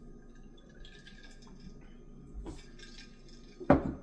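Quiet sipping and liquid sounds from a glass mason jar of sparkling water over ice, then a single thud near the end as the jar is set down on the table.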